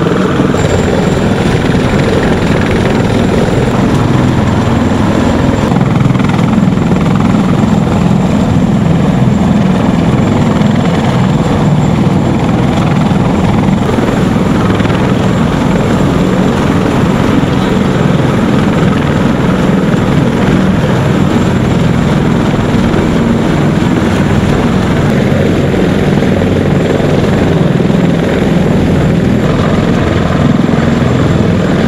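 CH-53 heavy-lift helicopter sitting on the ground with its turbines running and main and tail rotors turning: a loud, steady thrum with a thin high turbine whine above it.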